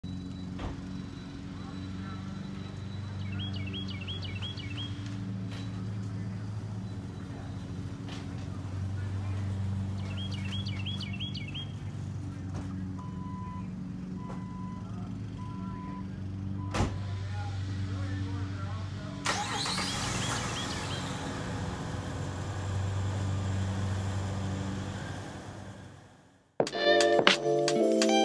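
A low steady hum while the garage door opens, with birds chirping now and then. Near the middle, a Jeep Wrangler's chime beeps four times, a door shuts with a click, and a few seconds later the engine starts and runs.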